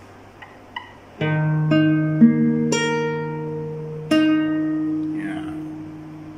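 Nylon-string classical guitar with a capo at the second fret, fingerpicked in a thumb-middle-index-ring-middle pattern. After about a second of quiet with a couple of faint finger clicks, four notes are plucked about half a second apart. A fifth note follows a little after the fourth second, and all of them ring on together and slowly fade.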